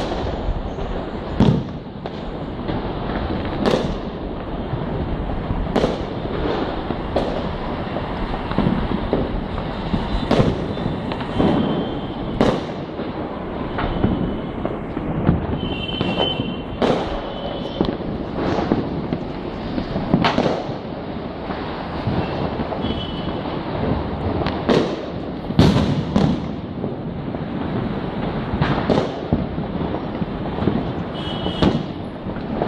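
Many fireworks and firecrackers going off: a continual rumble and crackle of distant bursts, with louder sharp bangs every second or two.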